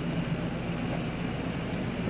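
A steady, low mechanical hum with a constant droning tone and an even rumble beneath it.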